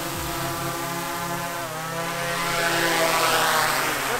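DJI Mavic 3 quadcopter's propellers whining close by as it flies in low and comes down to land, a steady buzz of several tones over a hiss. The pitch dips slightly about two seconds in, and the sound grows louder toward the end.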